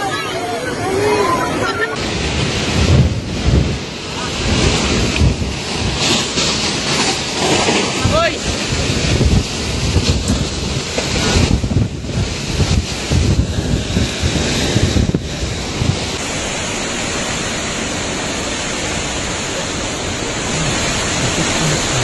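Typhoon-force wind gusting hard with heavy rain, buffeting the microphone in loud surges. About three-quarters of the way through it settles into a steadier, hissing rush.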